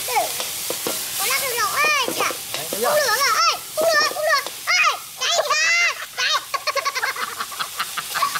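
Eel stir-frying in a hot wok over a gas burner: a steady sizzle with the spatula stirring and scraping. Over it a high voice gives a run of wordless whooping calls that swoop up and down, thickest in the middle of the stretch.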